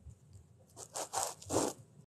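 Four short rasping scrapes in the second half, following a faint first second.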